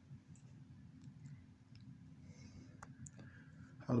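A few faint, scattered clicks and taps over a steady low hum.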